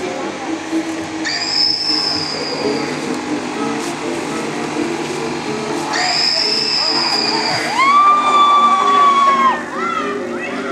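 High-pitched shrieks in a Halloween haunt, two short shrill ones and then a long held scream near the end, the loudest sound, over a background of music and voices.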